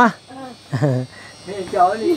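Steady high-pitched drone of insects such as crickets, heard under a few short spoken sounds.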